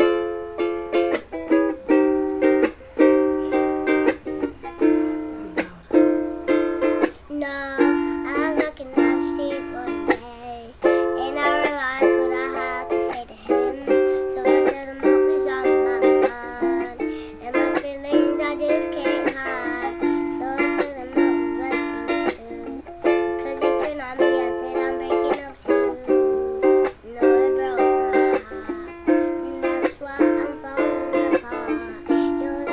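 Ukulele strummed in a steady chord rhythm.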